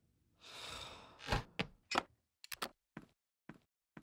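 A character's long sigh, followed by a run of light taps or knocks, about two a second, that grow fainter.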